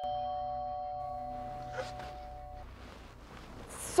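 Two-note chime, a higher note and then a lower one, both ringing on and slowly dying away over a low hum.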